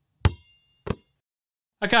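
Two sharp knocks about two-thirds of a second apart, the first louder and trailing a brief high ring, between stretches of dead silence: a transition sound effect between segments.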